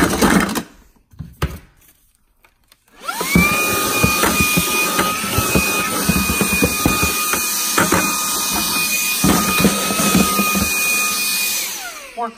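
Shark ION W1 cordless handheld vacuum switched on about three seconds in: its motor whines up in pitch and settles into a steady high whine. Knocks and clatter come from the pots and lids it works among in a drawer. It winds down near the end.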